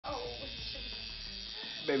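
Electric tattoo machine buzzing steadily as its needle works into skin.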